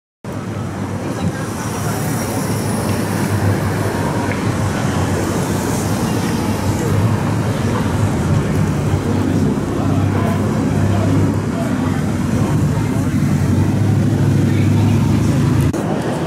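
City street traffic noise: a steady wash of passing and idling vehicles with a low engine rumble, mixed with indistinct voices. It starts abruptly just after the beginning, and the low rumble drops away near the end.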